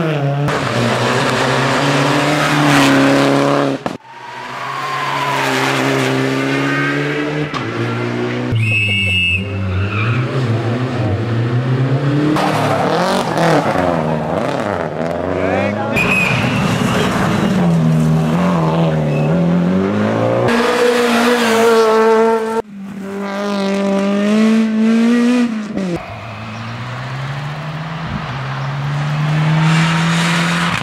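Rally cars at full throttle on a stage, engines revving up and dropping back at each gear change as they pass, in a series of short clips cut one after another.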